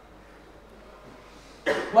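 Faint steady room tone, then about a second and a half in a man's short, sudden cough close to a handheld microphone, running straight into speech.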